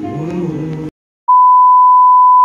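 Voices singing, cut off abruptly just under a second in; after a short silence a loud, steady, single-pitch electronic beep tone starts and holds.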